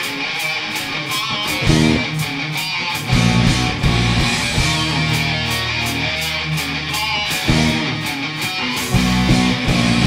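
Live rock band playing an instrumental passage on electric guitars and drums, with a steady cymbal beat of about four strokes a second under heavy guitar chords that are struck, held for a few seconds in the middle, and struck again near the end.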